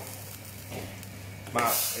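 Tomato and scampi sauce simmering in a stainless saucepan on a gas burner, a faint steady sizzle under a low hum.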